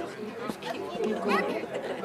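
Speech only: people talking, with voices overlapping in conversation.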